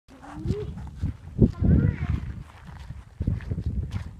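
Short vocal calls, one rising in pitch, over loud, irregular low rumbling from wind buffeting the microphone.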